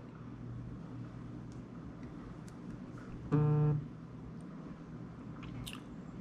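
A man sipping whisky from a small glass, with faint mouth and glass clicks, then a single short, low hummed "mm" from his throat a little over three seconds in as he tastes it. Otherwise quiet room tone.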